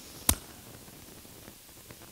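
Quiet room tone with a single short click near the start.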